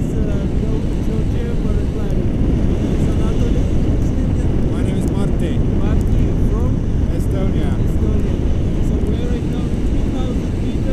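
Wind rushing and buffeting over the microphone of a camera carried through the air on a tandem paraglider in flight, a loud steady rumble, with faint voices under it.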